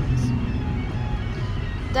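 Steady low rumble of a car cabin with faint music playing under it.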